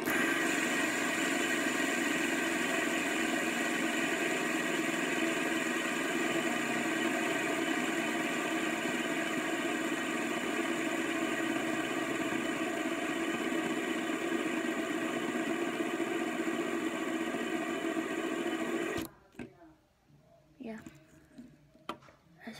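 Plastic fidget spinner spinning flat on a glass tabletop, a steady whirring buzz of many tones that holds level and then cuts off suddenly about 19 seconds in, as if stopped by hand.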